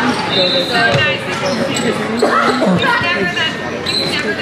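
Voices talking in a large echoing sports hall, with two dull knocks from the indoor field hockey play on the hard arena floor, one about a second in and another near three seconds.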